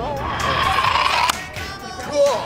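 A small wheeled egg car rolling down a metal gutter ramp with a hissing rattle, then hitting a concrete block with a single sharp knock a little over a second in.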